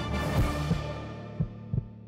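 TV show theme music fading out. Under it, low double thumps like a heartbeat repeat about once a second.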